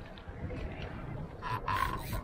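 Water splashing in short bursts about one and a half seconds in as a snapper is scooped up in a landing net beside the boat, over a steady low wind rumble on the microphone.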